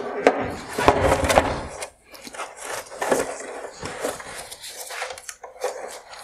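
Plastic headlight assembly being handled and pulled apart on a wooden workbench: a string of plastic knocks, clicks and scrapes, busiest in the first two seconds.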